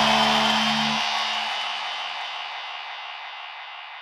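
The final chord of an instrumental rock track ringing out on electric guitar and bass. The low notes stop about a second in, while a high hissing wash fades slowly away.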